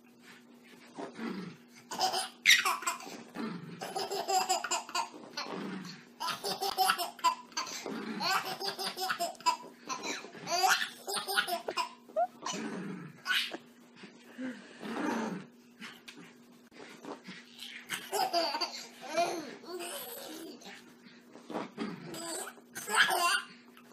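A baby laughing hard in repeated bursts of giggles and belly laughs, set off by a small dog darting around.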